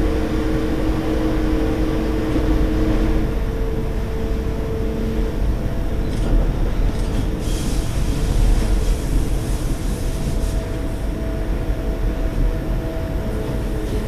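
Electric train running along the track, heard from the cab: a steady low rumble of wheels on rail with a humming tone that fades out a few seconds in, and a few brief high-pitched scrapes around the middle.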